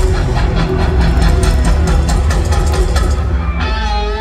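Live rock-country band playing loudly, recorded from the crowd: heavy bass with a run of quick drum hits, and a bending melodic line coming in near the end.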